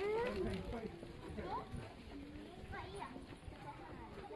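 Faint voices of people and children talking, with footsteps on a paved path.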